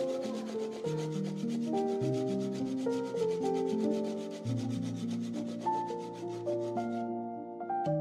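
Background music: a melody of held notes stepping up and down over a fast, even rasping rhythm that stops about seven seconds in.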